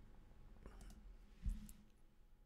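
Quiet room tone with a few faint clicks, then a single short low thump about one and a half seconds in.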